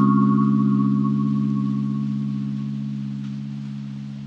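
Background music: a single held low chord that rings on and slowly fades.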